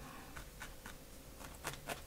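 Faint, scattered pokes of a felting needle stabbing through wool felt into a foam pad, a few soft clicks with a slightly stronger pair near the end.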